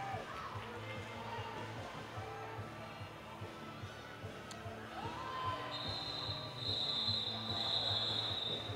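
Referee whistles blowing in a run of high blasts near the end, calling off the roller derby jam, over the faint murmur of the crowd.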